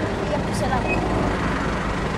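A motor vehicle's engine running steadily, a low hum with an even noise over it.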